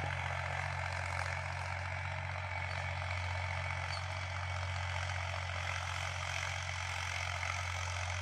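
Farm tractor's diesel engine running at a steady pitch as it pulls a tillage implement through dry soil, a constant low drone with no change in speed.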